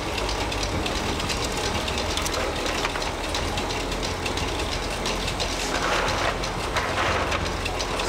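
Size B cashew cutting machine running with its blade holder set for size C nuts: a steady low motor hum under constant, irregular clicking and clattering. A short rustle comes about six seconds in.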